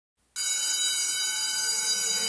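An electric school bell ringing steadily, starting about a third of a second in.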